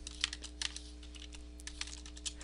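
Computer keyboard typing: a quick, irregular run of key clicks as an account number is entered, over a faint steady electrical hum.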